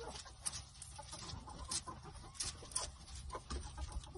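Chickens pecking feed from a galvanized metal treadle feeder: irregular sharp ticks of beaks striking feed and metal, several a second, with faint hen clucking.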